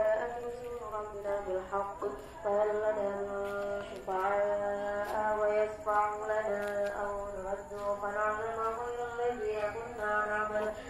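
A man chanting in long, held notes that waver and bend in pitch, with short breaks between phrases.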